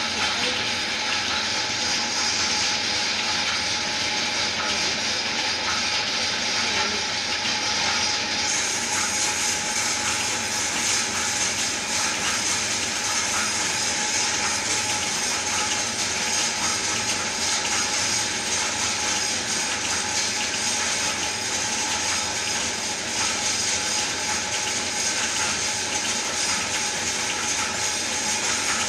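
Large lathe running and turning a tamarind log: a steady machine hum under the continuous hiss of the cutting tool in the wood. The hiss turns brighter about eight seconds in.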